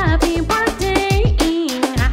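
Upbeat birthday song: a voice sings held, wavering notes over a band with a steady low beat, about two a second.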